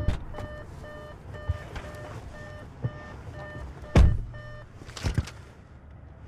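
A car's warning chime beeping about twice a second while the driver's door is open. A loud thump of the door shutting comes about four seconds in, the chime stops soon after, and a few lighter knocks follow as the driver settles in his seat.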